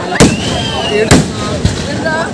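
Aerial firework shells bursting: three sharp bangs, the loudest about a quarter second in, then two more about a second and a second and a half in, with a high tone rising and falling between the first two bangs.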